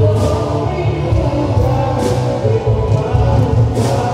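Music with a strong bass line and held tones, with a percussive hit about every two seconds.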